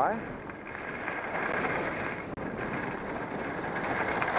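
Steady rushing noise of skiing downhill with a helmet camera: skis sliding over groomed snow mixed with wind on the microphone.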